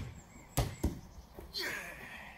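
A football kicked with a sharp thud, then two softer thuds as it travels across the lawn and knocks a target ball off its cone, and a brief shout near the end.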